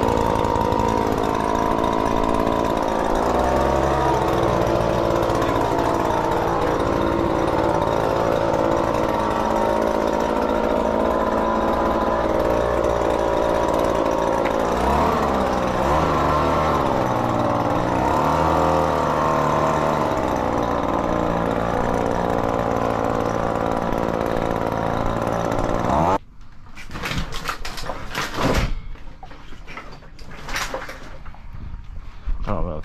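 Leaf blower engine running steadily while blowing sand off pavers. Its pitch wavers for a few seconds in the middle, and it cuts off suddenly near the end, followed by a few brief noises.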